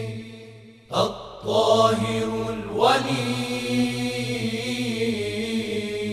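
A voice chanting religious verse in long, held notes. One phrase fades out at the start, a new one begins about a second in, and another near three seconds.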